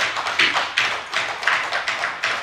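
Applause from the members in the chamber: a dense, irregular patter of many quick taps.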